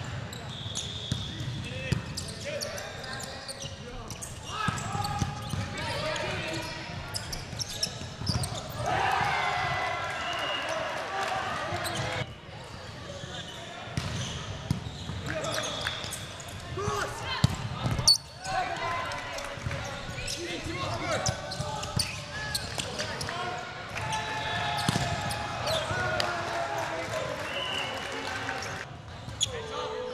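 Volleyball being played in a sports hall: players' voices calling and talking throughout over a general din, with sharp smacks of the ball being struck, the loudest a little past the middle.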